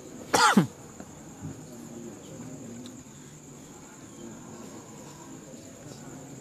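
A man coughs once, briefly and loudly, about half a second in. Behind it, crickets keep up a steady high trill.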